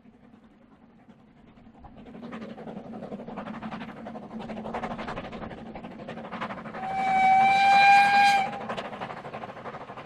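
Narrow-gauge steam locomotive working a train past, its exhaust beats growing louder from about two seconds in. Near the middle comes one steam whistle blast of under two seconds, the loudest sound, after which the exhaust beats carry on.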